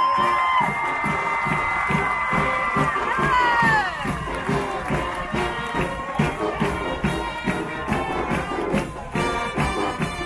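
A marching band's drumline plays a steady beat of about two strokes a second while the crowd cheers. A long, high held shout rings over it for the first few seconds before gliding down.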